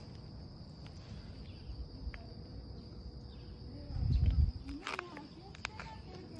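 Steady high-pitched trill of insects in the background. About four seconds in comes a brief low rumble, followed by a few light clicks.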